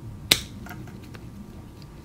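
Wire strippers' cutting jaws snipping through a thin insulated wire: one sharp snap about a third of a second in, then a couple of faint clicks from the tool.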